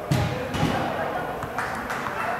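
Players' voices calling out in a large indoor football hall, with a few sharp thuds of the ball being kicked, echoing off the hall.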